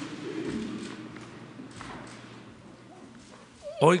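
Faint room sound of a large, echoing hall full of people: voices trail off early on, a few light clicks and taps follow, and a man's amplified voice begins right at the end.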